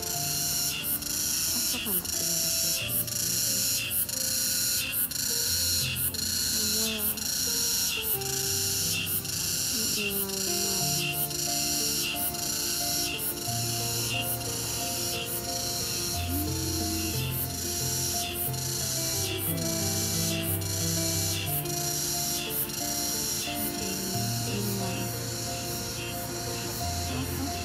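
Crickets chirping in a steady, regular rhythm, roughly one and a half chirps a second, over background music with sustained notes.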